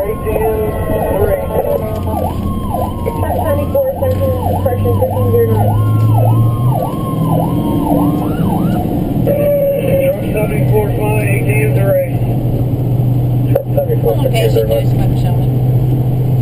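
Emergency vehicle siren running in fast, repeated up-and-down yelp sweeps, stopping about eight seconds in, heard from inside the cab of a following vehicle. Steady engine and road noise runs underneath.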